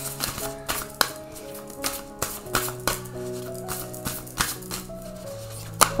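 Soft background music with sustained notes, over irregular snaps and flicks from a deck of oracle cards being shuffled by hand.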